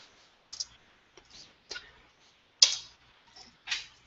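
Computer keyboard keystrokes: about seven separate key taps at an uneven, unhurried pace, the loudest about two and a half seconds in.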